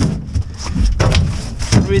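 Irregular knocks and thumps on an aluminum boat deck, about five in two seconds, over a steady low rumble of wind buffeting the microphone.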